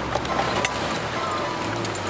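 Amphicar's rear-mounted Triumph Herald four-cylinder engine pulling in first gear as the car climbs out of the water. Its low hum fades just after the start and picks up again near the end, over a noisy haze with a few sharp clicks.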